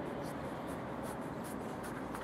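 A wide flat brush stroking a wet watercolour wash across paper in a run of short, scratchy brushing strokes, over steady background noise.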